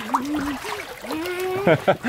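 A child's high voice calling out in short rising and falling sounds, without words, over light splashing of pool water.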